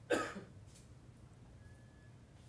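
A woman coughs once, briefly, near the start.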